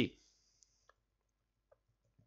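Three faint computer mouse clicks, about half a second in, about a second in and near the end, against near silence.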